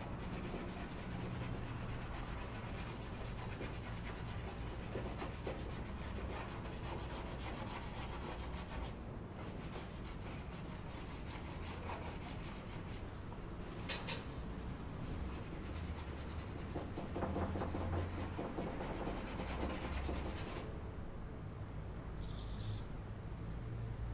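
A drawing tool scraping and rubbing pastel colour onto a painting's surface in long continuous strokes. The strokes pause briefly about nine and thirteen seconds in, with a sharp tick near fourteen seconds.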